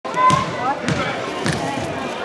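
A basketball bounced three times on a hardwood gym floor, a little over half a second apart, as a player dribbles at the free-throw line before shooting.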